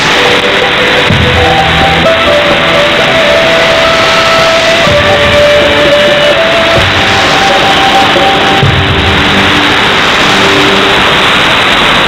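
Music carried on a shortwave AM broadcast signal, heard through a thick layer of static and hiss from the weak reception, with a muffled, narrow sound and a few soft low beats under held notes.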